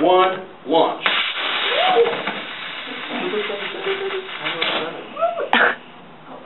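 Model rocket engine firing in a static test stand: a loud rushing hiss lasting about three and a half seconds, with a person screaming over it as it lights. A sharp pop sounds near the end.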